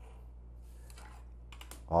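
Ballpoint pen drawing a line along a clear plastic ruler on paper, a faint scratch, followed about one and a half seconds in by a few light clicks as the ruler is lifted off the sheet.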